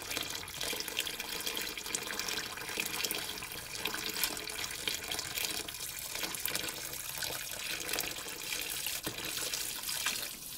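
Water pouring steadily from a bucket onto wet mud and into shallow standing water, splashing as it lands.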